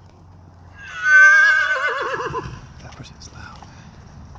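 A horse whinnying once, about a second in: a loud, high call that falls in pitch and quavers as it dies away, lasting about a second and a half.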